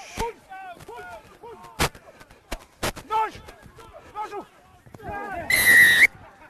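Scattered shouts from players and spectators during open play, with a few sharp knocks. Near the end the referee's whistle sounds once, a shrill blast of about half a second, signalling the try.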